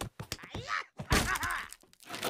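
Cartoon character's short effort grunts with a hard wooden thunk about a second in, as a wooden cabinet drawer is pulled at.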